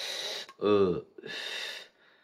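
A man exhaling cigarette smoke after a drag, two long breathy exhales on either side of a short spoken "un".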